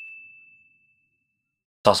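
Tail of a bright electronic ding from a title-card sound effect: one high tone fading out within the first second, then dead silence until a man's voice starts near the end.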